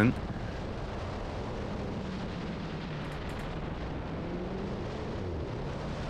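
Alfa Romeo 4C's turbocharged 1.75-litre four-cylinder engine running under a steady rush of wind and road noise on an outside-mounted microphone as the car drives through an autocross slalom. The engine note rises slightly about four seconds in.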